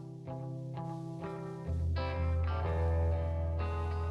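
Fender Telecaster electric guitar picking the opening notes of an indie rock song, about two notes a second. A deep, louder bass note joins in a little under halfway through.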